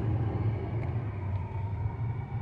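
Car running, heard from inside the cabin as a steady low rumble.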